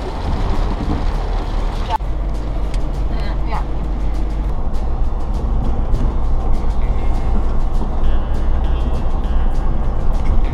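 Steady low rumble of a Nissan car's engine and tyres, heard from inside the cabin while it drives along a road. There is a sudden cut in the sound about two seconds in.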